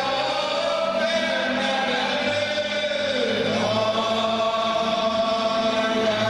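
Hungarian folk music from fiddles and double bass: a slow melody in long held notes over a steady drone, dipping and then climbing to a new held note about halfway through, with low bass notes coming in.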